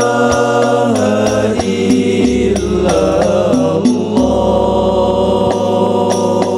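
Group of male voices singing an Al-Banjari sholawat chant through microphones, holding long notes that shift in pitch every second or two.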